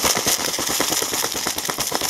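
Dried chili flakes shaken out of a plastic bag over a pan of vegetables: a rapid, steady rattling crinkle.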